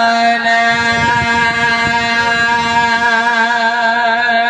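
A man's voice chanting one long steady held note in the sung style of a majlis recitation, wavering slightly in pitch once or twice.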